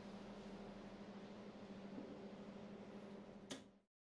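Quiet room tone with a steady low hum, and about three and a half seconds in a single sharp tap of a steel-tip dart striking the dartboard; the sound then cuts off.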